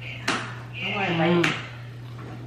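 A woman biting into a soft key lime pie donut and chewing. Two sharp mouth clicks about a second apart frame a short, muffled hum through a full mouth.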